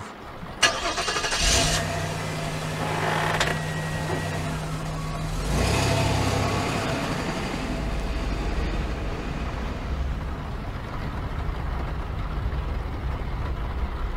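Car engine starting and running, then pulling away about five and a half seconds in and settling into a steady low rumble of driving, preceded by a sudden short noise under a second in.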